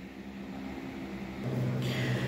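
A 12-inch Hawaiian Breeze oscillating desk fan running on high: a steady, soft whoosh of air with a faint motor hum.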